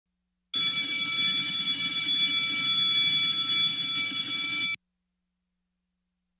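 Chamber session bell ringing steadily for about four seconds and then cutting off suddenly, signalling the opening of the sitting.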